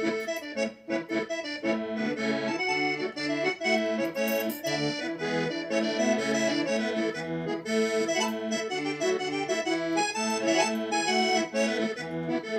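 Korg electronic keyboard playing a traditional folk tune with no singing, in chords and melody in a reedy, accordion-like voice.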